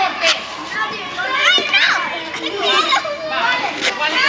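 Several young girls' voices chattering, laughing and squealing excitedly as they play a ball game, with a couple of short sharp taps among them.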